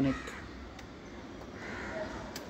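A crow cawing faintly in the background, with a call near the end.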